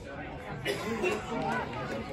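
Indistinct chatter of several voices overlapping: spectators and players talking and calling out around the pitch, none of it clear enough to make out.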